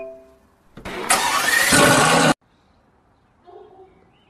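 A short electronic chime, the last beep of a start countdown, then a sports car engine starts up with a loud rev for about a second and a half before cutting off abruptly.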